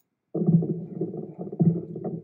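A muffled low droning sound, with nothing above the low pitches, that starts about a third of a second in and pulses unevenly.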